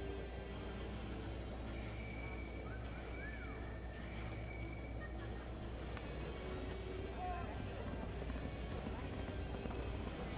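Steady arena background: a constant low hum under an indistinct murmur of crowd voices, with a few faint brief tones.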